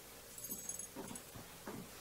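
A dog whimpering faintly: a few short, soft whines.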